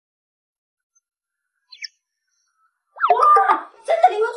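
Dead silence, broken about two seconds in by a brief, faint high chirp of an edited-in sound effect; a woman's voice starts speaking about three seconds in and is the loudest sound.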